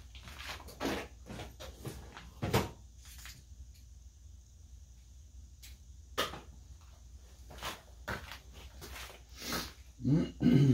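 Scattered light knocks and clicks, as of small objects being handled, over a low steady hum; the sharpest knock comes about two and a half seconds in.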